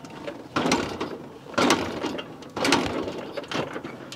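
A motorcycle kick-starter being worked: three or four rattling mechanical strokes about a second apart. The engine does not catch.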